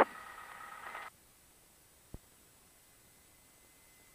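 Faint steady electronic hiss of a cockpit intercom feed, with no engine sound coming through. A short buzzy burst of intercom or radio noise in the first second cuts off abruptly, and a single click follows about two seconds in.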